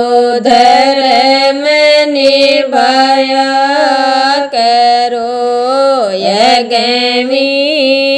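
A woman singing a Rajasthani (Marwari) devotional bhajan, drawing out long wavering held notes between the lines, with a clear dip in pitch about six seconds in.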